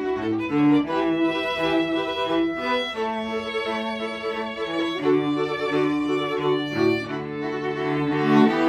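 String quartet of violins, viola and cello playing a Christmas medley, several bowed parts holding and changing notes together over a cello line.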